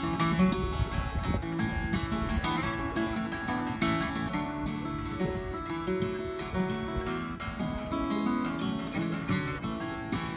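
Steel-string acoustic guitar played solo, an instrumental passage of picked and strummed chords with no singing.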